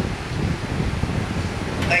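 Wind buffeting a microphone: an uneven, gusting low rumble with no tone to it.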